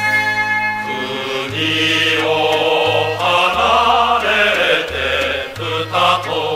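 Mixed choir singing a Japanese wartime popular song (senji kayō) with instrumental accompaniment. A short instrumental passage of bell-like tones ends about a second and a half in, and the voices come in over a steady bass line.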